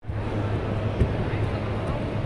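Indoor room ambience: a steady low rumble with indistinct voices in the background and a single click about a second in.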